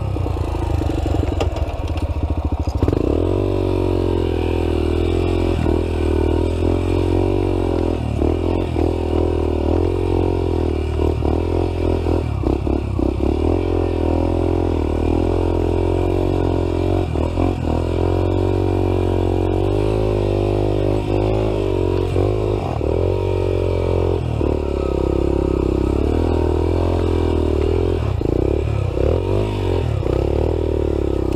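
Dirt bike engine running throughout, revving up and down as the bike is ridden over the trail, with a few short knocks along the way.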